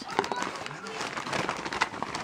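Gift wrapping paper rustling and crinkling as a present is unwrapped by hand, a dense run of small crackles.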